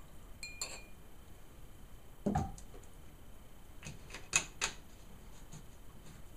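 Metal jigger and glass bottle being handled on a bar counter while mixing a shot: a short ringing clink just under a second in, a duller knock a little after two seconds, and a few sharp clinks around four seconds in.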